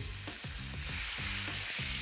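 Onion and ginger sizzling in oil in a hot frying pan as hot sauce is poured in, the sizzle growing a little stronger about halfway through. Background music plays underneath.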